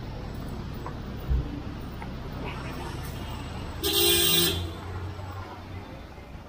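A vehicle horn honks once for just under a second, about four seconds in, over the low steady running of vehicle engines in street traffic. A short low thump comes about a second in.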